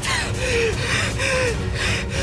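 A young man's voice panting and gasping hard in short, strained breaths, about two a second, over a steady low rumble.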